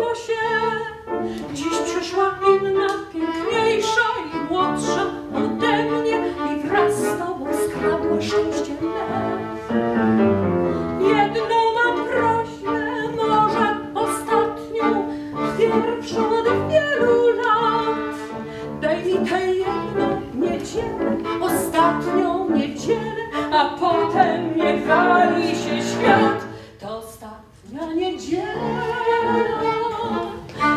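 A 1930s Polish tango song performed live by a woman singing in a classical style, accompanied by violin and grand piano, with a brief pause near the end.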